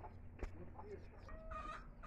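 A chicken clucking quietly, with short pitched calls late on, and a single sharp tap about half a second in.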